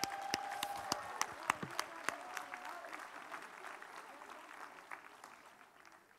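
A congregation applauding, the clapping gradually thinning and fading away.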